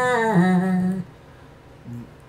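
A man's sung phrase played back with its pitch raised by Adobe Audition's Stretch effect (Raise Pitch preset), giving a thin, high 'chipmunk' voice. A held note cuts off about a second in, leaving faint hiss.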